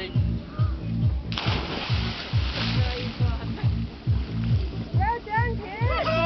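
A loud splash about a second in as a man and a child jump feet first into the sea together, the noise of the water lasting a second or two. Under it runs music with a steady thumping beat.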